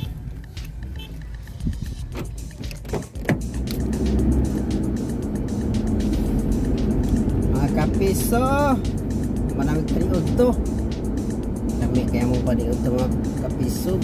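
A thump about three seconds in, then a car driving: engine and road noise heard inside the cabin, a steady low rumble that grows louder as it gets under way. Background music plays over it.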